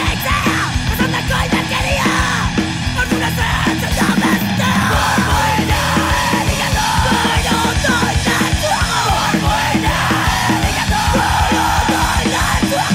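Hardcore punk song with yelled vocals over a loud full band.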